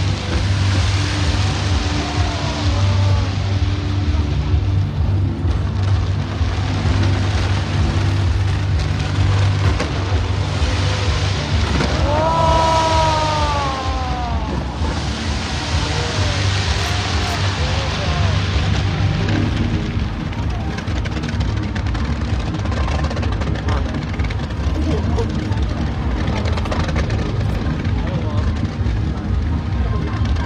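A New Year's fireworks display sounds as a continuous dense crackle and rumble of bursts, with crowd voices and music beneath. About twelve seconds in comes a long rising-and-falling whoop.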